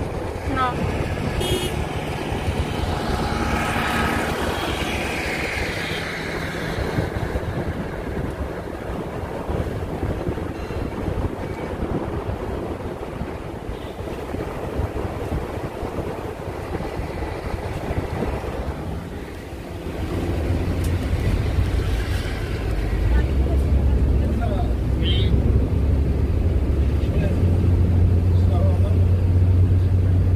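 Road and engine noise of a moving vehicle, a steady rumble throughout. About twenty seconds in it turns into a louder, deeper steady drone, as heard inside a Toyota van's cabin on the move.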